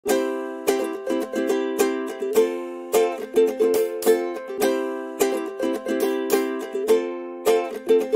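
Background music: a light, bouncy tune of quick plucked chords, each note striking sharply and then fading.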